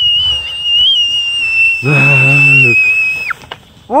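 A girl's long, shrill scream while sledding, held unbroken at one high pitch and cutting off about three seconds in.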